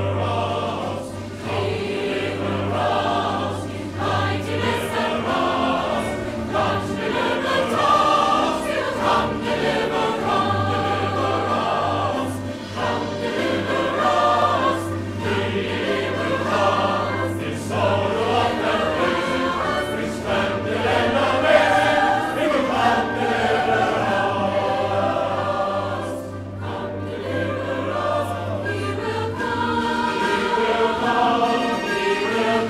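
A large choir and stage cast singing together, many voices sustained throughout.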